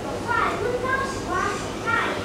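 A young girl speaking in a high voice, in short phrases.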